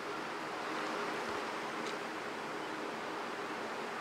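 Steady, even outdoor background hiss of a golf course at a quiet moment, with no distinct events apart from a faint tick about two seconds in.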